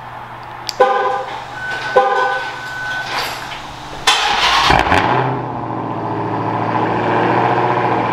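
Dodge Challenger SRT's V8 started from the key fob: the horn chirps twice, then about four seconds in the engine fires with a loud flare and settles into a steady idle.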